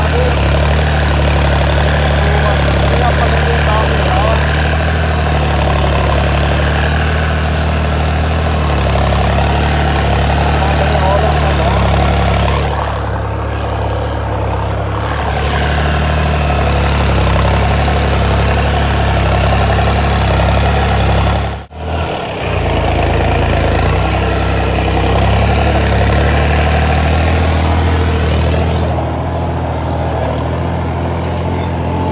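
Diesel engine of a New Holland 6510 tractor running steadily while it pulls a field implement through soil, heard close up from the operator's seat as a continuous deep drone. The sound cuts out for a split second about two-thirds of the way through.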